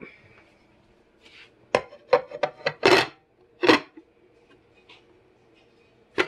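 Slow cooker's lid and small crocks knocking and scraping against the cooker as they are put in place: a quick run of clicks and knocks with two short scrapes, starting a little under two seconds in.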